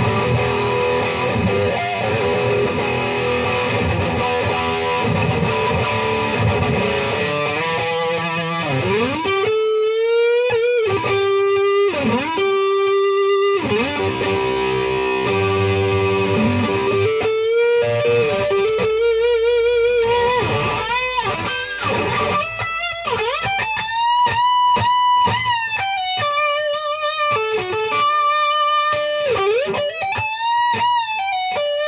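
Parker PDF70 electric guitar played through an amp on a high-gain, distorted setting. For about the first nine seconds it plays dense riffing, then sustained single lead notes with wide vibrato and pitch bends.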